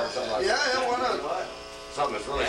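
A voice in the first second, then a steady buzzing tone with many even overtones holding for most of the last second, quieter than the voice.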